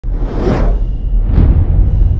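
Animated-title sound effects: two whooshes about a second apart over a deep, steady rumble.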